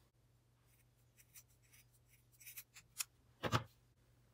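Scissors cutting fabric: several faint snips and rustles, with a louder one about three and a half seconds in, as a small piece and its slit are cut out.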